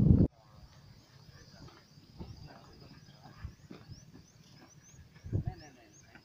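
A loud voice breaks off abruptly just after the start. It is followed by faint open-air sound of people talking at a distance, with a faint high rising chirp repeated over and over, and the voices grow louder near the end.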